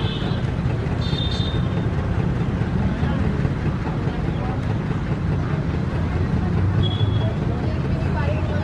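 River terns giving short high calls, once about a second in and again near the end, over a steady low rumble.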